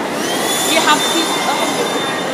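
Cordless stick vacuum cleaner switched on: its motor spins up in a rising whine over about half a second, then holds a steady high-pitched whine.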